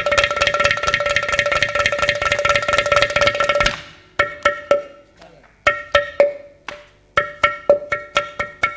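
Carnatic percussion, mridangam and ghatam, playing a fast run of dense, ringing pitched strokes that breaks off about halfway through. A few scattered strokes follow, and an even stroke pattern starts up again near the end.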